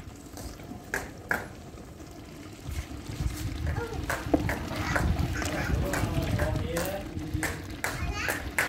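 A ladle stirring and scraping through goat tripe frying in ghee in a large aluminium pot, with scattered clicks of the ladle against the pot. The tripe is being fried down until the ghee separates. Faint voices can be heard in the background.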